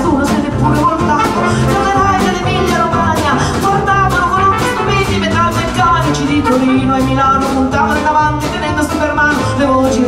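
Live small band of drums, double bass, trumpet and guitar playing an instrumental passage with a quick, steady beat and a melody over it.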